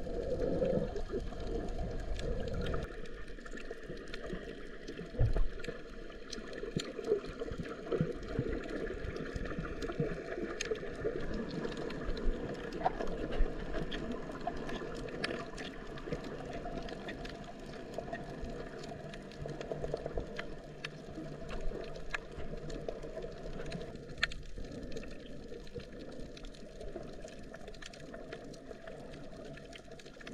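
Muffled underwater water noise picked up by a submerged camera: a steady low rushing sound with scattered faint clicks.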